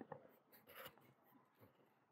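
Near silence, with a faint, brief rustle or scrape a little under a second in.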